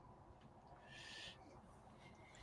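Near silence: room tone, with a faint, brief hiss about a second in.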